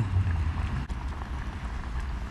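Butane camping gas stove burning under a pot of simmering porridge: a steady low rumble with a faint hiss, and a small click a little under a second in.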